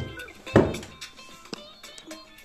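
Logo-quiz background music with a low thud sound effect about half a second in that fades away, marking the screen wipe to the next question; a short sharp click follows near the middle.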